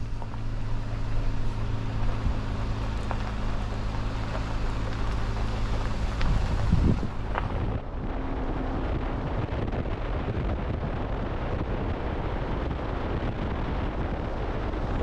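Jeep Wrangler running with a steady engine hum as it pulls away slowly, then, from about eight seconds in, wind rushing over the side-mounted camera's microphone with road noise as the Jeep drives at highway speed.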